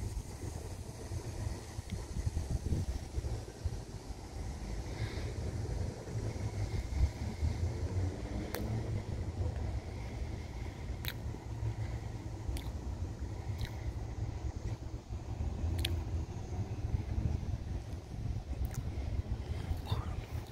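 Steady low outdoor rumble, with a handful of faint, sharp clicks in the second half.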